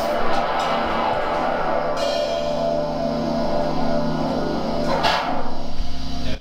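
Instrumental rock jam: electric guitar through effects pedals and bass guitar holding sustained notes over a drum kit, with cymbal crashes about two seconds in and again near the end.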